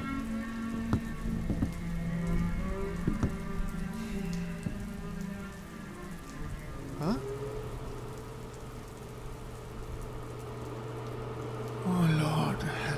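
Steady rain under a low, sustained film-score drone whose held notes shift in pitch. About seven seconds in, a tone slides upward and settles into one long held note.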